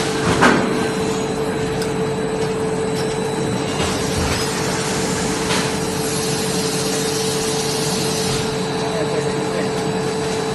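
Plastic sheet extrusion line running: a steady machine noise with a constant hum. There is a sharp knock about half a second in and a couple of faint clicks later.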